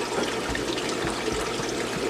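Aquarium water running and trickling steadily, as from tank filtration and circulation.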